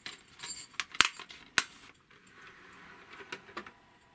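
A few sharp plastic clicks and taps from a DVD case being handled and a disc being loaded into a DVD player. The loudest click comes about a second in, with softer ones near the end.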